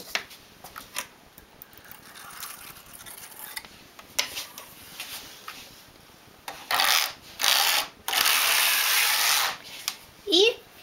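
Knitting-machine carriage sliding across the metal needle bed as a row is knitted, making a rasping rush. A few sharp clicks come first; the sound is loudest in three strokes in the second half, the last about a second and a half long.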